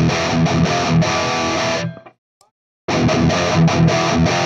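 High-gain distorted electric guitar riff through a Peavey 5150 valve amp head into a Bogner cabinet's Vintage 30 speaker, close-miked with an SM57. The playing stops abruptly about two seconds in, drops to silence for under a second, then the riff starts again.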